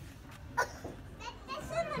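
Young children's voices: a short high-pitched exclamation about half a second in, then a child talking near the end.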